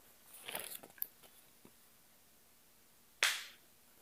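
Faint handling noises: a soft rustle, a click about a second in, and a short sharp swish about three seconds in that quickly fades.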